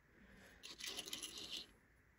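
A soft scraping rustle lasting about a second as a small diecast toy car is turned around by hand on a tabletop.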